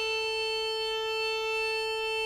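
Bagpipe music played through a Denon DHT-S218 soundbar with a Polk Audio MXT12 subwoofer and picked up by a microphone in the room: one steady held note.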